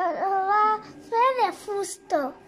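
A young child's high voice in long, sing-song phrases whose pitch glides up and down, in the way a small child recites a story.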